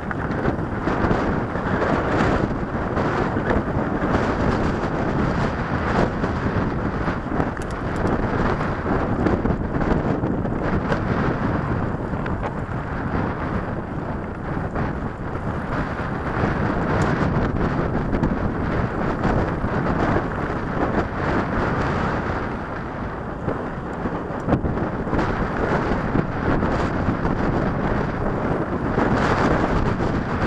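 Wind rushing over the microphone of a camera riding on a moving mountain bike, steady throughout, with tyres crunching and small knocks and rattles as the bike rolls over a stony dirt trail.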